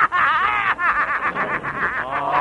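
A laugh-like snicker: a gliding pitched sound that breaks into a quick run of short pitched pulses, about eight a second, set inside a comic novelty-band musical number.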